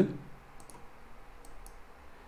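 Several faint, sharp computer mouse clicks spread through a pause.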